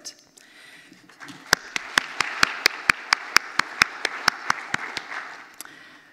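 Audience applause that builds about a second in and fades near the end, with one set of sharp, louder claps close by, about five a second, standing out over it.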